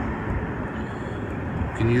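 Steady outdoor background noise, a low even rumble with no distinct events, before a man's voice starts near the end.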